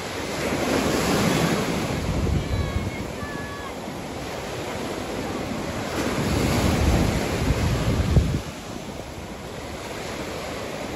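Gulf of Mexico surf breaking and washing onto the beach, swelling louder about a second in and again from about six to eight seconds, when it falls away suddenly. Wind buffets the microphone.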